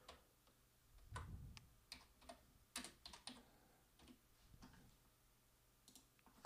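Faint computer-keyboard typing: irregular soft key clicks as a channel name is typed in.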